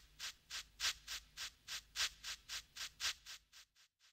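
Steam locomotive chuffing sound effect, a steady run of about three and a half chuffs a second that dies away over the last second as the engine comes to a halt.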